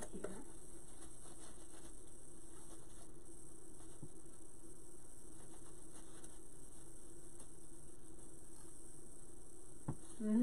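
Steady low hum in the room with faint rustling and a few light taps as a stick-mounted sign is worked into a deco mesh and ribbon wreath.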